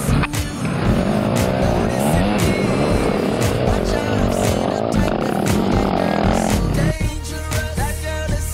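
Motocross dirt bike engines revving, their pitch rising and falling as the bikes ride the track, with background music and a steady beat under them. A little before the end the engines drop away and only the music carries on.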